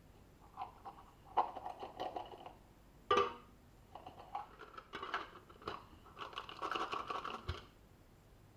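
Small steel shotgun parts being picked up off a workbench mat and dropped into a clear plastic tub: scattered clicks and light rattling in three bouts, with a sharper knock about three seconds in.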